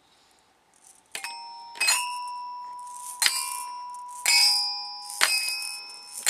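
Toy metallophone (a colourful xylophone-style toy with metal bars) struck with a stick, five slow strikes starting about a second in, each note ringing on and fading.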